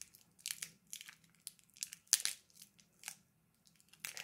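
A Toxic Waste candy wrapper crinkling and crackling in the hands as it is pulled and twisted to tear it open. It comes in several short rustles, the loudest a little past the middle.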